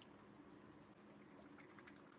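Near silence: a low steady hum, with a few faint soft clicks in the second half from a kitten chewing and licking food off a plate.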